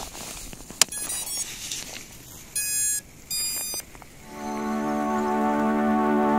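An 18650 cell clicks into a nano quadcopter's battery holder, and the powered-up quad plays its startup tones through the motors: a quick run of short beeps, then two longer beeps. Keyboard music comes in about four seconds in.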